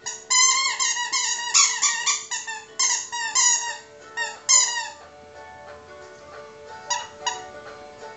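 Rubber chicken-leg squeaky toy squeaking in quick runs of short squeaks, each falling in pitch, as a puppy bites and chews it, loudest through the first five seconds, with two brief squeaks near the end, over background music.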